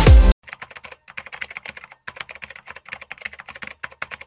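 Electronic dance music cuts off abruptly just after the start. It gives way to quiet, rapid clicking like computer keyboard typing, in fast runs with short pauses.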